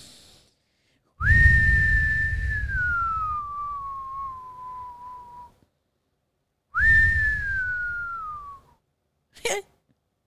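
Two long whistles, each leaping up and then gliding slowly down in pitch. The first lasts about four seconds, and the second starts about a second and a half later and lasts about two. A breathy low rumble runs under both.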